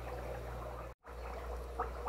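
Steady background of trickling water and a low hum from running aquarium equipment. The sound drops out completely for a moment about halfway through.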